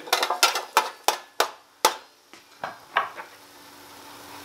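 Raw sweet potato fries clattering against a metal roasting tin as they are tossed by hand in oil: a quick run of knocks for about two seconds, then a few scattered ones.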